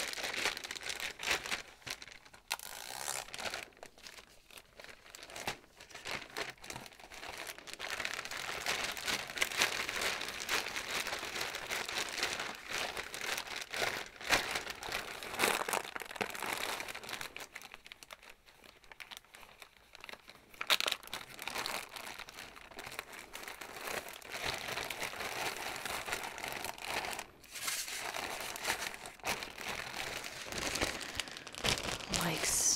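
Clear zip-lock plastic bags crinkling and rustling as they are handled and packed, in irregular bursts with a quieter stretch about two-thirds of the way through.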